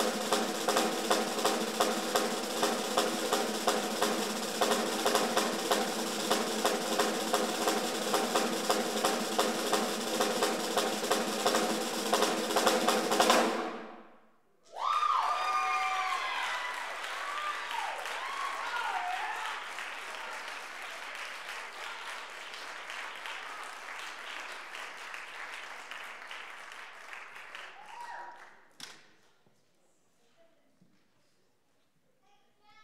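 Snare drum solo: fast, rhythmic strokes and rolls building louder, then stopping abruptly about fourteen seconds in. Audience applause with whoops and cheers follows, dying away near the end.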